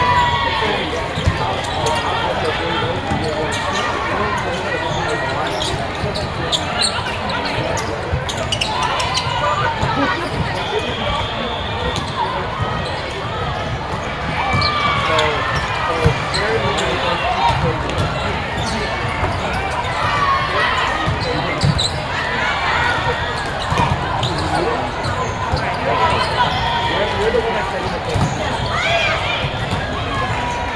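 Indoor volleyball game in a large, echoing hall: indistinct voices of players and spectators, with short sneaker squeaks on the court and occasional sharp smacks of the ball being hit.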